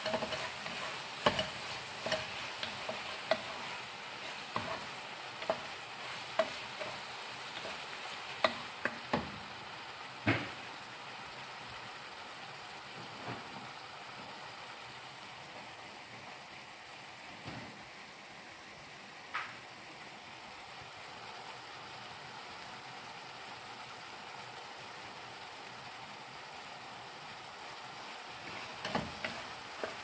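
Minced meat and onions sizzling as they fry in a pot, with a wooden spatula stirring and knocking against the pot's sides. The knocks come often in the first ten seconds, thin out through the middle, and pick up again near the end over a steady sizzle.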